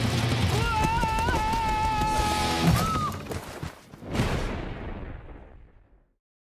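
Film-trailer closing music and sound effects: dense crashing, shot-like hits under a held, wavering high note for about two seconds, then one last hit about four seconds in that dies away to silence.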